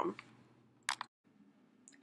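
Two quick sharp clicks, close together about a second in, amid near silence.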